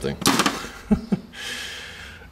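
Hand tools and parts clattering and rustling as a hand rummages through a cluttered tool box drawer, with a sharp click about a second in.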